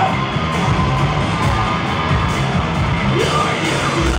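Live rock band playing loudly in a club, with the crowd yelling over the music.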